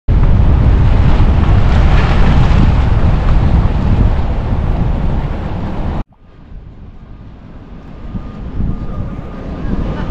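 Loud wind noise buffeting the microphone, cutting off suddenly about six seconds in. After the cut, softer wind and distant surf that slowly grow louder.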